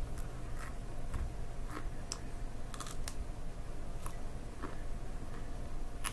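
Raw broccoli being chewed: short, irregular crisp crunches, about ten of them, over a steady low background hum.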